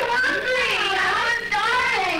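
Teenage girls' voices, with pitch rising and falling throughout and no clear words.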